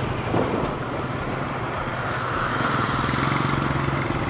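Motorcycle engine running steadily at riding speed, heard from the bike itself, under a steady rush of road noise.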